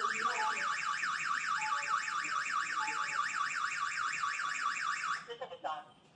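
PG106 alarm host's siren sounding in an SOS alarm, a loud electronic wail that sweeps rapidly up and down in pitch. It cuts off about five seconds in as the system is disarmed from the app, and a few brief tones follow.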